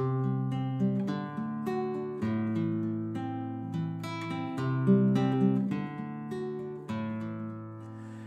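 Classical guitar with a capo, played solo: picked chords and notes in a steady, flowing pattern, the instrumental introduction before the singing begins.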